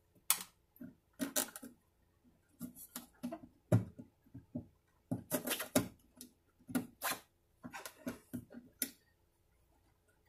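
Low E nylon string being threaded and knotted at a classical guitar's tie-block bridge: irregular scrapes, rubs and ticks of the string and fingers against the bridge and top, in short bursts with brief pauses.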